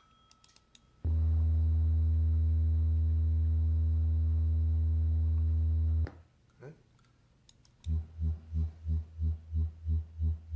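A few computer mouse clicks, then an 80 Hz test tone played through computer speakers: a steady low hum for about five seconds that cuts off suddenly. After a short pause the same tone returns, swelling and fading about three times a second, an amplitude-modulated version that mimics the pulsing low-frequency sound of wind turbines.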